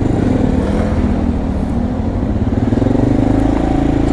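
Motorcycle engine running while riding in traffic, its note rising and falling gently.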